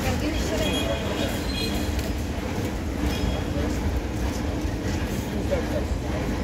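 Metro station platform sound: a steady low rumble from rail traffic, with people's voices mixed in.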